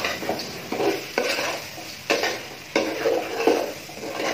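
A metal spatula stirring and turning raw rice through meat and oil in an aluminium pot, in a run of uneven scraping strokes against the pot.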